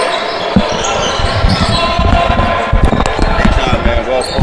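A string of irregular low thuds, with indistinct voices in the background.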